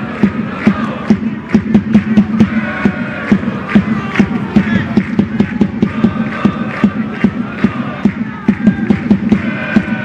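Football supporters chanting in unison to a steady drum beat.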